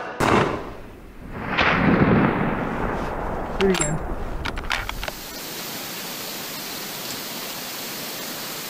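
A sudden loud boom that dies away into a rumble, then a second swelling rumble and a few sharp cracks: a thunder-like sound effect over the title logo. From about five seconds in it gives way to a steady hiss of outdoor recording noise.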